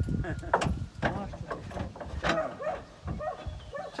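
Speech only: people talking in the background, their words not clear.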